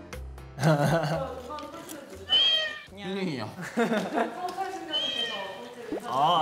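Background music cuts off about half a second in. Then a young man's voice makes a string of drawn-out, whiny, meow-like cries that rise and fall in pitch.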